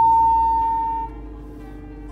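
A steady single-pitch electronic beep from an elevator, holding for about a second and then cutting off, over quieter background music.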